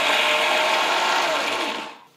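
Electric mixer grinder (mixie) running at full speed, grinding a wet dosa batter in its stainless steel jar. It is switched off near the end and the motor winds down.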